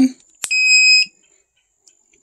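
EverStart Plus 400 W power inverter switched on: a sharp click, then one high electronic beep lasting about half a second, the inverter's power-on signal.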